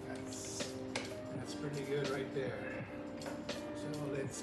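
Background music: a song with a singing voice over held notes, with a few light clicks or taps.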